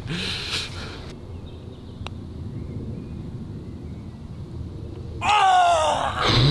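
A putter strikes a golf ball once with a light click about two seconds in, over a low steady rumble. Near the end a man lets out a long, loud cry as the putt only just misses the hole.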